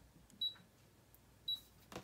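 Two short high beeps about a second apart from a Brother ScanNCut digital cutter's touchscreen, each confirming a tap on its buttons.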